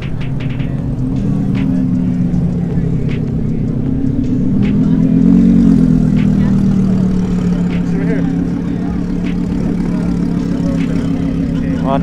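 Audi R8's V10 engine running at low revs as the car creeps past close by, swelling a little about five seconds in and then easing back.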